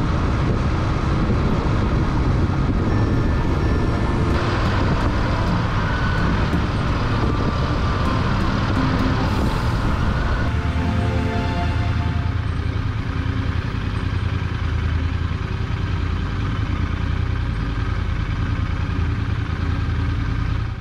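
Royal Enfield Interceptor 650's parallel-twin engine running steadily while riding on an expressway, with wind and road noise over it; about halfway through the wind noise eases and the engine's note comes through more clearly.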